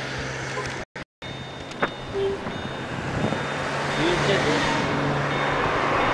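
Street traffic at a roadside: a steady low hum with a passing vehicle that grows louder in the second half, and a few faint distant voices. The sound cuts out completely for a moment about a second in.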